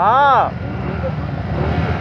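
A short drawn-out voice call with its pitch rising then falling in the first half-second, then a small motorcycle engine idling as a steady low rumble.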